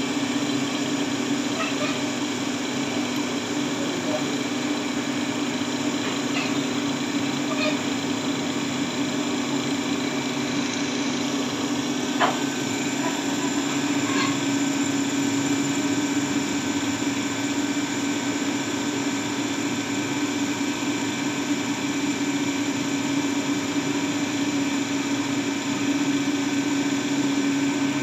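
CNC milling machine running steadily as a small end mill takes a finishing pass around a bowl-shaped mould cavity in metal. The spindle and cut make a constant hum with one brief click about twelve seconds in.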